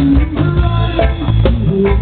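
Live band playing outdoors: electric guitar and bass over drums and hand percussion, with drum hits on a steady beat about twice a second.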